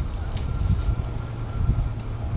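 Wind buffeting the microphone: an uneven low rumble that rises and falls in gusts.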